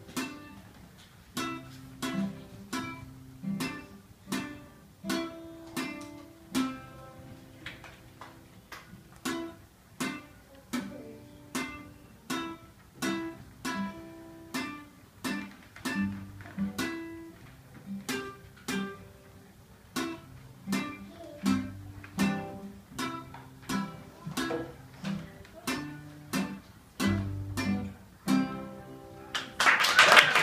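Nylon-string classical guitar playing a slow piece of separate plucked notes over bass notes, roughly one to two notes a second. Applause breaks out at the very end.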